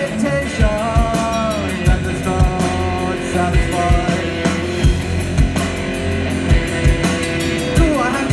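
Live rock band playing electric guitars, bass and drums, heard through the stage PA, with a steady kick-drum beat about twice a second under a melodic line that bends in pitch.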